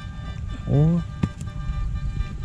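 A man's short "oh" of surprise over faint background music, with one sharp click just after it.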